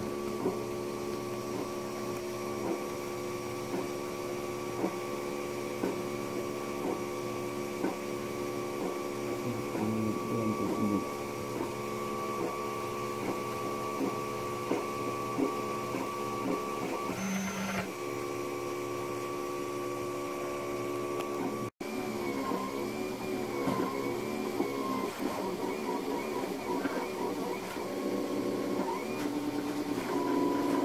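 Monoprice Select Plus 3D printer printing: its stepper motors and cooling fans sound in several steady tones, with small ticks as the print head changes direction. After a brief dropout about 22 s in, the motor tones rise and fall in quick repeated arcs as the head makes short back-and-forth moves.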